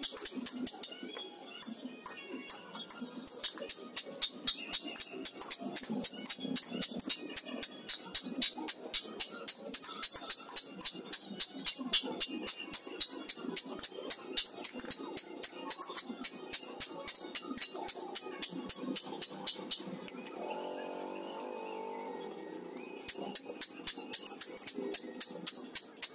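Hand hammer striking the iron blade of a shovel on a small steel stake anvil, steady sharp metallic blows at about two a second, easing off briefly near the end, with background music throughout.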